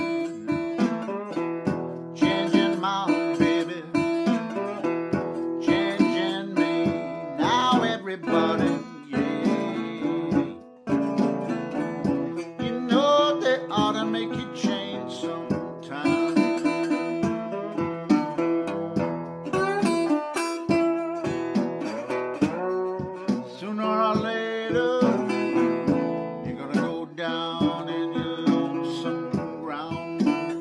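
1931 National Duolian steel-bodied resonator guitar in open D tuning, fingerpicked with a bottleneck slide: a country-blues figure of picked notes and sliding glides over a steady droning bass.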